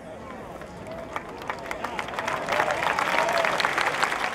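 Large crowd applauding, the clapping swelling from sparse to dense over a few seconds, with scattered voices calling out.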